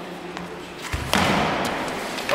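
A sudden heavy thud about a second in as the knife fighters close in on the gym mats, followed by a short stretch of loud scuffling noise.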